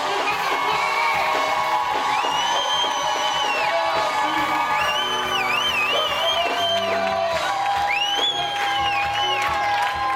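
Church worship music with held chords, over a congregation cheering. Three long high whoops slide up and hold, the middle one trilling.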